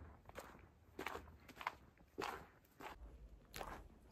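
Footsteps of a person walking on a snow-covered pavement, faint and even, about two steps a second.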